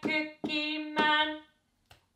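A woman singing a children's counting song slowly and unaccompanied, three held notes with the drumstick tapping the floor on the syllables. The singing stops about one and a half seconds in, and a single finger click falls in the rest near the end, the cue for swapping the stick to the other hand.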